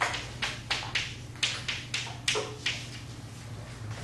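Chalk tapping and scratching on a blackboard while a word is written, about a dozen sharp strokes in the first three seconds, over a steady low room hum.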